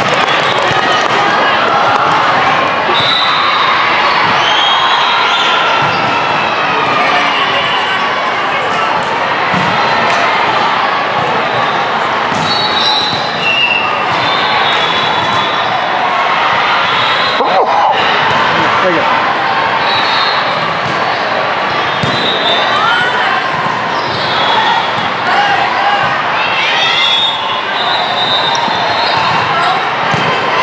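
Indoor volleyball hall din: many overlapping voices from players and spectators, volleyballs being hit and bouncing on the hard court, and short high squeaks of shoes on the floor scattered throughout.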